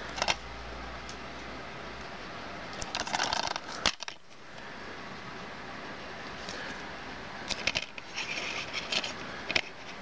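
Plastic DVD keep case being handled and opened: a cluster of light plastic clicks and rattles a few seconds in, as the case snaps open, then more scattered small clicks near the end as the case and disc are handled.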